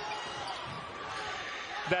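Steady arena crowd murmur during live basketball play, with the ball and court sounds in the background.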